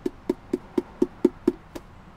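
Percussive knocks tapped on the ukulele's body in a steady beat, about four a second.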